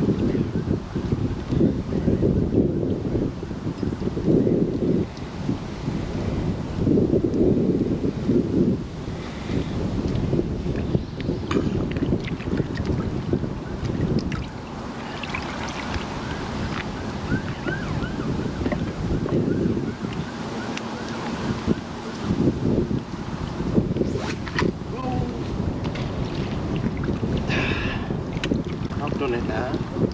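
Wind buffeting the microphone in gusts over choppy, lapping water.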